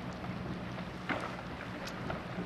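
Steady low hum of a ship's engines with wind on the microphone, broken by two brief sharp cracks, one about a second in and one near the end.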